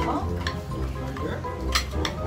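Background music with a steady bass, over the clink and scrape of spoons on plates and bowls during a meal, with a sharp clink at the start and another near the end.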